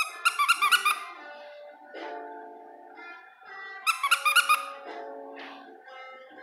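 A dog yelping in two quick runs of rapid high yips, one at the start and one about four seconds in, over guitar music in the background.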